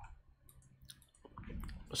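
Faint, scattered small clicks, a few of them in quick succession about midway, with a soft rise of noise near the end as a word begins.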